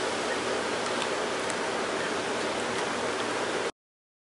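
Steady, even background hiss with no voice, cutting off suddenly to dead silence near the end.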